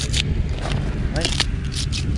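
Fresh lemongrass stalks split and torn apart by hand, a few short crisp tearing sounds, over a steady low rumble.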